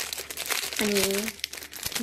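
Shiny metallised plastic wrapper of a Twix chocolate bar crinkling as it is handled and opened, in dense, irregular crackles.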